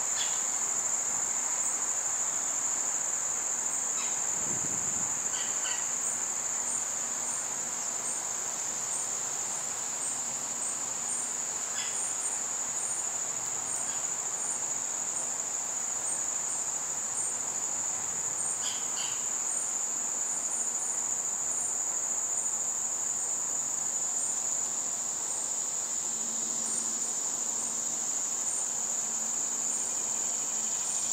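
Steady, high-pitched chorus of insects trilling without a break, with a few short chirps scattered through it.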